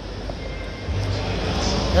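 Background noise of a busy exhibition hall: a steady wash of noise, with a low hum that comes in about a second in.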